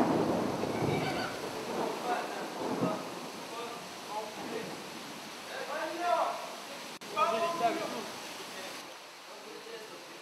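Indistinct voices of people talking at a distance, over a hiss of background noise that is loudest in the first two seconds.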